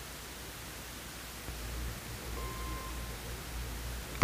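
Steady hiss of an old tape soundtrack, with a low hum that grows louder about a second and a half in, and a brief faint steady tone a little past halfway.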